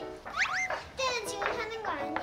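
Young children's voices talking and calling out over each other, with a high rising exclamation about half a second in, over background music.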